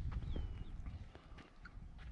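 Faint footsteps on dry dirt, a few scattered steps, over a low wind rumble on the microphone, with one short high chirp about a quarter second in.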